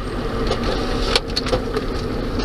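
Steady road and engine noise inside a moving car's cabin, with a few short clicks a little past the middle.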